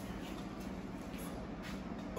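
Hard breaths from a man straining through a set of dumbbell presses: a faint exhale near the middle and a stronger one near the end, over a steady low hum.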